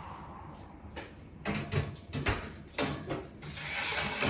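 Knocks and clatter of a baking tray being put into an oven and the oven door being handled, several sharp strikes in the second half, with a hiss building near the end.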